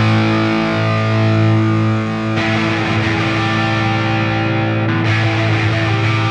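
Straight edge hardcore punk recording: distorted electric guitar chords held and ringing out with no drums, a new chord coming in about two and a half seconds in.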